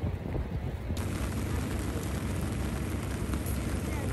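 Rain on a wet city street, heard as a steady hiss over a deep, continuous rumble. The hiss turns brighter and fuller about a second in.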